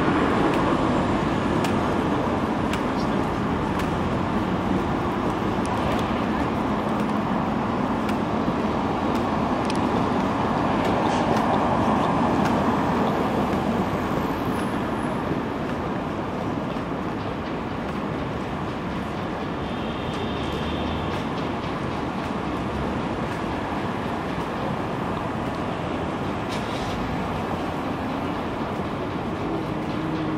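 Steady road traffic on a busy city street, growing louder for a while around the middle as cars pass.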